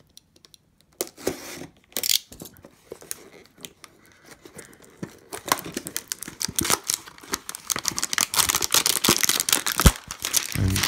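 A cardboard trading-card hanger box being slit with a utility knife and torn open, then its plastic wrapper crinkling. A few short scrapes come in the first seconds; the tearing and crinkling turns into a dense crackle from about halfway.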